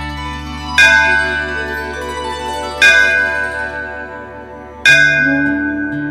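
A bell struck three times, about two seconds apart, each strike ringing on and fading, over a steady low drone and a soft repeating pattern of devotional theme music.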